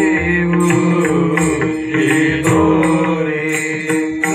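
Men singing a Hindu devotional bhajan in chorus, keeping time on small brass hand cymbals (taal) struck in a steady rhythm.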